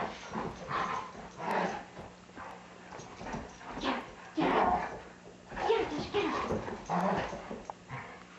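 Two Doberman dogs play-fighting, giving short barks and yelps in an irregular string of bursts.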